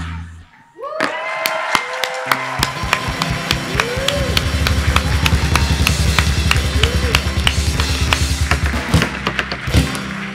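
Live band music: after a short break about half a second in, a drum kit and bass start a steady groove, with a few sliding notes over the beat.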